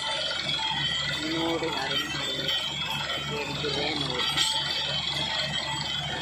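Truck-mounted borewell drilling rig running as it drills: a steady low, evenly pulsing sound under a high hiss of compressed air blowing cuttings and dust out of the hole. A voice carries on over it throughout.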